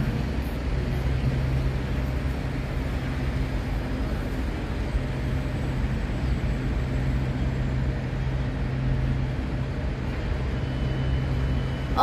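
Steady low engine hum mixed with constant urban traffic noise, unchanging throughout.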